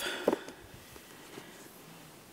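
Faint handling of a paperback book as it is slid off a shelf and held up, with a few small ticks over quiet room tone. A brief voiced sound comes just after the start.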